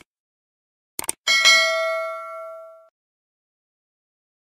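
Subscribe-button animation sound effect: quick mouse clicks, then a single notification-bell ding that rings out for about a second and a half.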